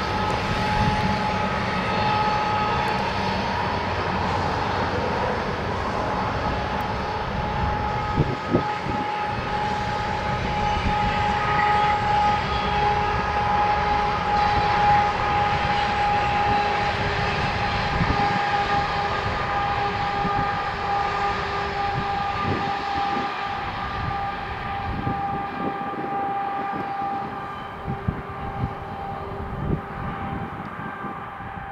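Long Canadian Pacific freight train rolling by at a distance: a steady rumble of wheels on rail with a held whine above it, easing off a little near the end.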